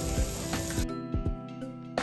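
Food sizzling in a hot stone bowl as it is stirred, over light melodic background music; the sizzle cuts off abruptly just under a second in, leaving only the music.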